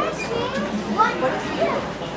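Crowd chatter: many young people talking at once, overlapping voices with no single clear speaker.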